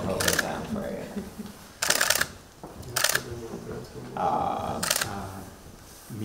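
Camera shutters firing in four quick bursts: one at the start, a longer rapid run about two seconds in, one at three seconds and one near five seconds.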